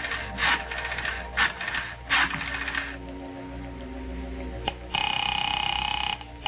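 Radio-drama sound effect of a telephone being dialled, a run of clicks, over sustained organ underscore. About five seconds in, a loud, steady buzzing ring tone starts on the line.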